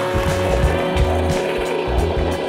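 Background music: an instrumental track with held tones and a rhythmic bass line.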